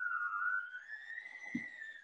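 Electric hand mixer's motor whining as its beaters work through stiff, flour-heavy dough. The pitch sags about half a second in, then climbs slowly as the motor strains under the thickening dough.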